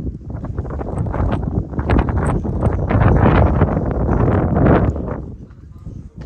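Footsteps on stone paving, with a loud rushing noise that swells from about a second in and dies away near the end.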